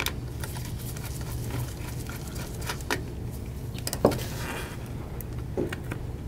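A few light clicks and knocks from handling the M.2 SSD and its retaining screw inside the opened laptop, the sharpest about four seconds in. A steady low hum runs beneath.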